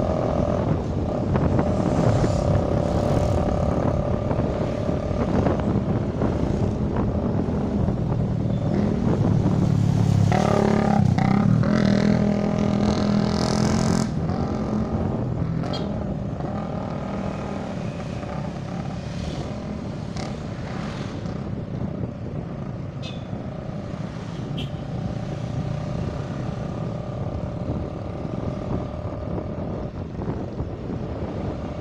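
Motorcycle engine running while riding along a road, with steady road noise. It swells louder for a few seconds around the middle, then settles lower from about fourteen seconds in.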